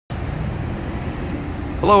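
Steady low rumble of a vehicle engine running nearby. A man's voice cuts in near the end.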